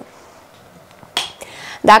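A single sharp click a little over a second in, followed by a short soft hiss, as a small plastic facial cleansing brush is handled and taken out of a wicker basket.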